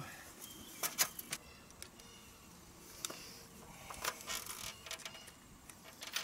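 Scattered light clicks and rattles of small hardware being handled, screws and a cordless drill picked up from an aluminium stepladder, in a few short clusters over a quiet background.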